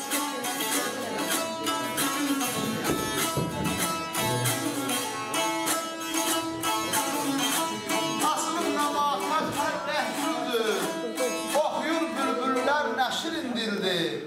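Azerbaijani saz, a long-necked lute with metal strings, strummed with quick, even strokes in a folk aşıq melody. A voice comes in over the playing about eight seconds in.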